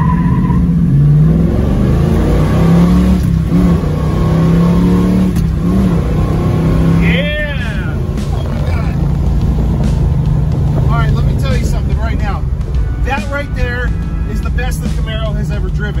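1967 Camaro SS's 396 big-block V8 revving hard under a launch, heard from inside the cabin. Its pitch climbs and steps through the gear changes, then drops about seven seconds in and settles to a lower, steadier run.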